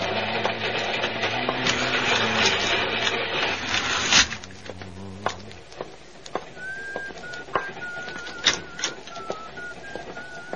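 Radio-drama sound effects: a dense, rhythmic mechanical clatter with held low tones cuts off abruptly about four seconds in. Then come scattered sharp clicks and someone whistling a wavering tune.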